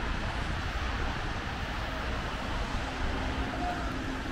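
Steady, distant city traffic noise heard from high above the street, with a low wind rumble on the microphone.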